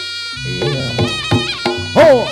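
Reog Ponorogo gamelan music. A slompret shawm holds one reedy note, then plays a melody over drum strokes coming about three a second.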